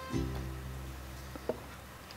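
Soft Mexican-style background music with a plucked string instrument: a note is plucked just after the start and dies away. There is one short tap about a second and a half in.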